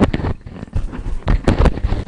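Sound effects of an animated logo sting: a sharp burst at the start, then a quick cluster of further bursts about one and a half seconds in.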